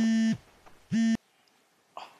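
Mobile phone buzzing with an incoming call: a steady, buzzy note in short pulses about once a second. The second pulse is cut off abruptly about a second in, leaving faint room tone.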